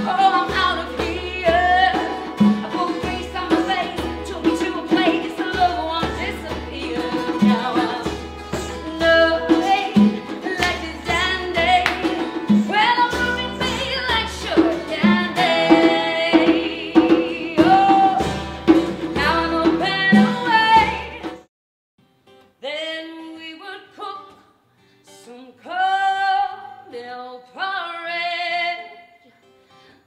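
A woman singing live to guitar-led band accompaniment, with low sustained notes underneath. About two-thirds of the way through, the band stops and she carries on singing unaccompanied, phrase by phrase.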